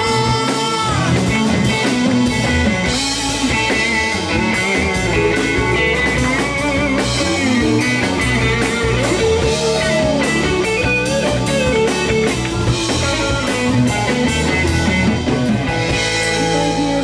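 Live rock band playing an instrumental passage, electric guitar to the fore over drums, bass and keyboard.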